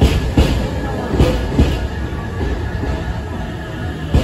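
JR West Thunderbird limited express pulling slowly into the station platform: a steady low rumble of the moving train, with a few sharp clunks in the first two seconds.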